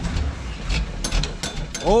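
Old Chevrolet Custom Deluxe pickup's engine lugging and stalling as the manual clutch is let out, with irregular knocks and clatter as it dies. The stall comes from a driver unused to a manual gearbox.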